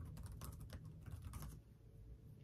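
Typing on a computer keyboard: a quick run of faint key clicks that breaks off about one and a half seconds in.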